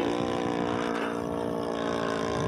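The internal-combustion engine of a radio-controlled P-47 Thunderbolt model aircraft running steadily in flight at an even pitch.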